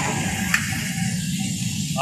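Ladle stirring thick pav bhaji gravy in a large aluminium pot over a steady low rumble, with one sharp click about half a second in.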